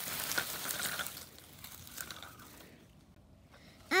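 Dry leaves rustling and crunching as a small plastic toy wagon heaped with leaves is pulled over a leaf-covered lawn, loudest at first and dying away to almost nothing by about three seconds in.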